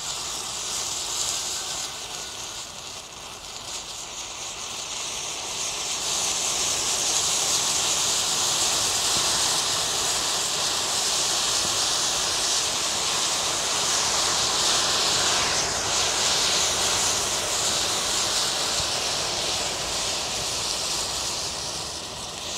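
Bundled safety match heads igniting one after another in a chain reaction: a continuous hissing rush of flame that grows louder about six seconds in, holds, and eases off near the end.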